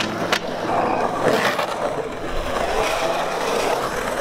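Skateboard wheels rolling steadily over the concrete of a skate bowl, with one sharp knock about a third of a second in.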